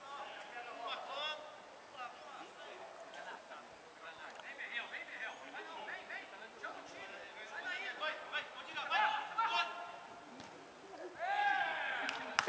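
Faint, distant voices calling out in short bursts, louder near the end.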